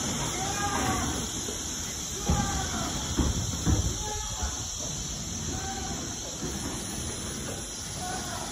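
A high-pitched voice crying out in short rising-and-falling calls, repeated about every two seconds. A few low knocks come midway through.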